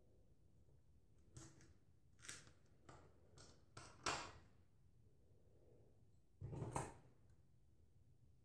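Faint handling sounds of hair being combed and rolled onto a plastic perm rod: a string of short light clicks and rustles in the first half, then a louder half-second scuff about six and a half seconds in, otherwise near silence.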